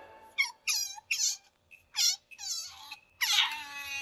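Asian small-clawed otter squeaking: a series of about six short, high-pitched calls, each falling in pitch, with brief pauses between them.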